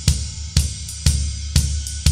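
Drum kit played slowly: a swung triplet pattern on a Paiste ride cymbal over bass drum hits on the eighth notes, with strong thumps evenly about twice a second.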